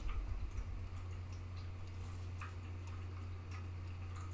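A steady low hum with a few faint, irregular ticks over it.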